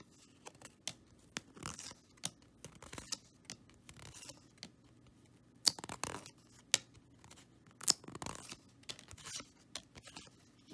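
Cardboard trading cards slid and shuffled through the fingers one after another: soft scrapes and scattered sharp ticks, with two louder snaps, one a little before the six-second mark and one near eight seconds.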